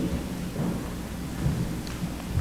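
Steady, even hiss with a faint low hum underneath: the background noise of a large room, heard in a pause between words.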